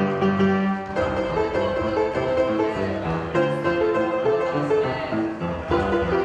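Upright piano played with both hands: chords under a moving melody in a steady rhythm, with a new chord struck about a second in.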